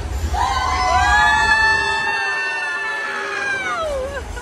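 Several voices hold one long yell together for about three seconds, and the pitch slides down at the end. A low rumble sits underneath and drops away partway through.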